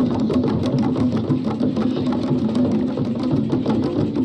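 Fast, dense drumming on hand drums, a quick steady run of strikes without a break.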